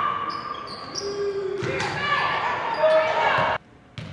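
Basketball game sound in a gym: voices calling out over a bouncing ball on the hardwood court, echoing in the hall. The sound cuts off abruptly about three and a half seconds in.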